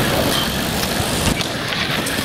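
Wheels rolling over skatepark concrete, with wind on the microphone and a short knock about 1.3 seconds in.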